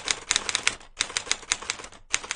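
Typing sound effect: rapid key clacks keeping pace with on-screen text being typed out letter by letter, with a short break about a second in.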